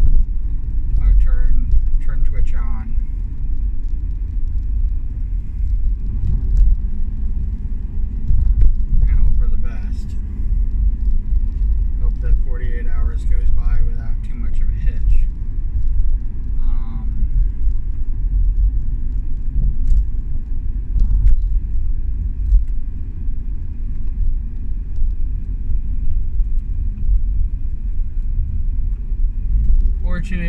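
Car cabin noise while driving: a steady low rumble of engine and road heard from inside the car, with faint steady tones above it.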